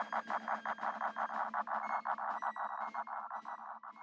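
Electronic music: a rapid, even pulsing pattern, about seven pulses a second, over a low held note, fading out near the end.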